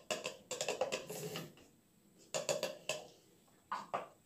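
Plastic hand citrus juicer rattling and scraping in two bursts of quick strokes as it is handled and a lemon half is twisted on the reamer.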